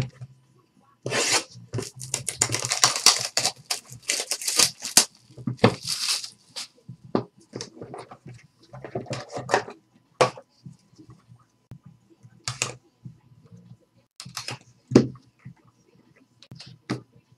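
Clear plastic shrink-wrap being torn and crinkled off a sealed trading card box: a dense run of tearing and crackling for several seconds, then scattered rustles and light knocks as the box is handled.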